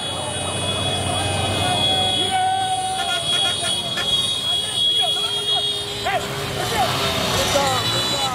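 Crowd voices shouting over running vehicles, with a vehicle horn held in a long blast about two seconds in and another steady horn tone through the last few seconds.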